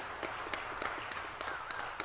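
An audience applauding: a short round of dense hand clapping.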